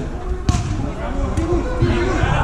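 A football struck on a small indoor pitch: a sharp thud about half a second in, after a lighter knock at the start, amid players' shouting voices.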